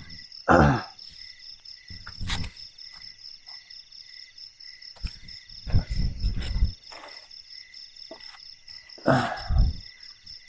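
Crickets chirring in a steady, high-pitched chorus. Over it come four loud rustling, knocking bursts from tent and camping gear being handled; the longest is about five to seven seconds in.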